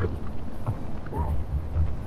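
Wind buffeting the microphone on an exposed mountain ridge, an uneven low rumble that rises and falls in gusts.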